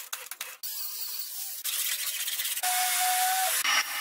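Car body-shop work sounds in quick cuts: about half a second of sharp crackling clicks while metal is worked in a shower of sparks, then steady hissing that changes abruptly about every second, ending with the air hiss of a paint spray gun.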